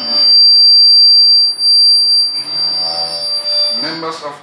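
Public-address microphone feedback: a loud, steady high-pitched squeal, with a man's voice starting under it about halfway through.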